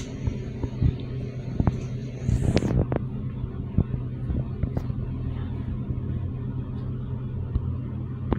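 Fujitec hydraulic elevator car descending: a steady low hum with scattered light clicks and knocks. A high hiss cuts off about two and a half seconds in.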